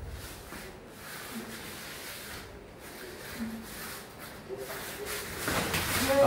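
Scuffling of two wrestlers grappling on a rubber floor mat: bodies, clothing, knees and bare feet rubbing and shifting in irregular rustles, growing louder near the end.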